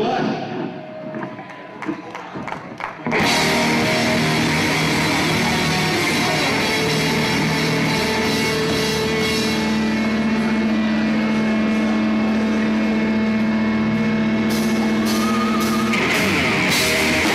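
Live heavy rock band with distorted electric guitar, bass and drums. It starts quietly, then the full band comes in loud about three seconds in, with a long held note through the second half.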